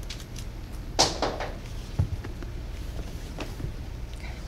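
Handling noise as a handbag and a shoe are lifted off and moved on a tabletop: a sharp rustle-and-knock about a second in, a dull thump about two seconds in, and a faint click later.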